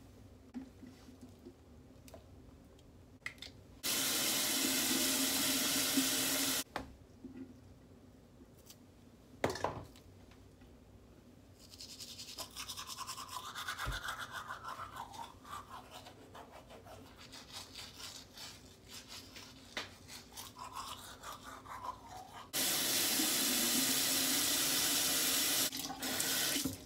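A water tap running into a bathroom sink for a few seconds, then a manual toothbrush scrubbing teeth in uneven strokes for about ten seconds, and the tap running again near the end.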